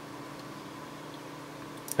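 Quiet, steady room tone with a faint electrical hum.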